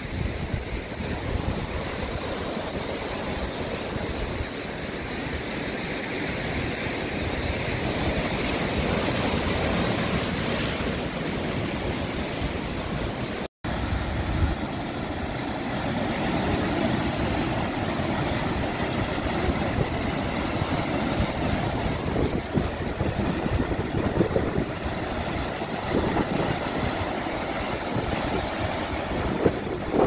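Sea surf breaking and washing over a pebble and rock shore, with wind on the microphone. The sound drops out for an instant about halfway through.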